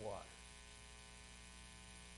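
Faint, steady electrical mains hum with a stack of even tones above it, heard once a man's voice stops on a word just at the start.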